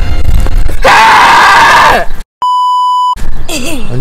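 Edited soundtrack: music plays briefly, then a loud drawn-out voice falls in pitch at its end. After a moment of dead silence comes a steady electronic beep lasting under a second, a censor-style bleep.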